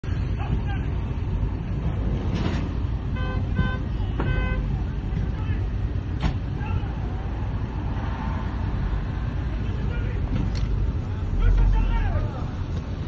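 Steady traffic rumble heard from inside a car, with a car horn tooting four short times about three to four seconds in. A low bump of the phone being handled comes near the end.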